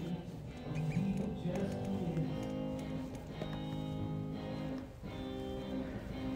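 A live theatre band plays the slow instrumental lead-in to a musical-theatre song: sustained chords that change every second or two, just before the vocal begins.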